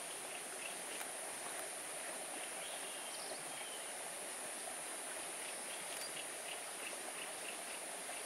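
Outdoor natural ambience: a continuous high-pitched insect drone over the steady hiss of running water, with faint short chirps recurring throughout.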